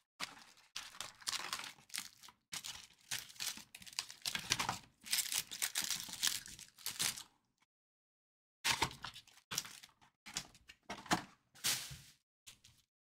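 Foil trading-card packs crinkling and rustling in quick bursts as they are handled and pulled from the box, with a pause of about a second after the middle.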